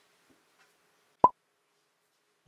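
A single short, sharp pop a little over a second in, in otherwise dead silence: an edited-in pop sound effect.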